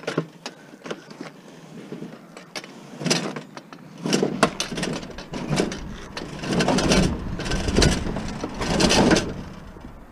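A discarded sheet-metal electric stove being shifted and dragged over asphalt: a few light knocks at first, then a series of rough scraping, rumbling bursts from about three seconds in, loudest near the end.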